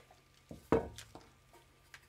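One sharp knock of a hard object on a tabletop about a second in, with a couple of lighter taps around it, against quiet room tone.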